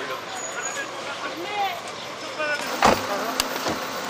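Cars pulling up on a driveway with faint voices around them. About three seconds in comes a sharp click from a car door being opened, followed by two lighter clicks.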